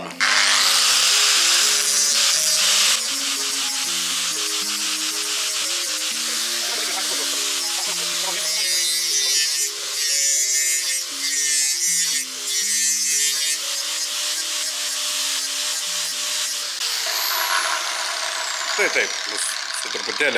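Angle grinder with a sanding disc spinning up and grinding the cut edges and corners of small steel flat-bar and square-tube pieces to deburr and round them, the grinding noise changing as each piece is pressed on and turned. Near the end the grinder spins down with a falling whine. Background music with a melody plays underneath.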